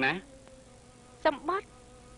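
Film dialogue on a worn old soundtrack: a spoken phrase ends just after the start and a short two-syllable utterance comes a little over a second in. Between them a faint steady buzzing hum from the degraded audio transfer.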